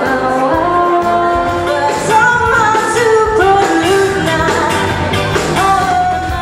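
Pop song: a woman's voice singing a gliding melody with held notes over a band.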